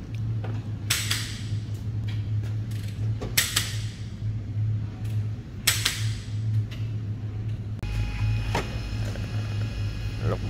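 Sharp mechanical clicks, a few seconds apart, from hands and tools working in a car's engine bay during routine servicing, over a steady low hum.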